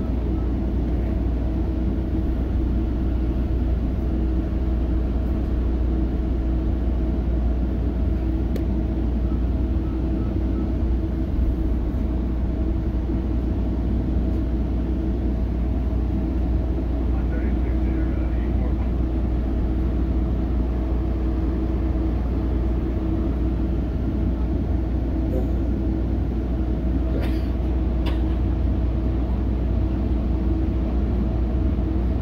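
Steady running noise heard from inside a moving Metrolink passenger coach: a low rumble with a constant hum over it. There are a couple of faint clicks near the end.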